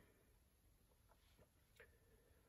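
Near silence: faint room tone with a couple of faint short ticks in the second half.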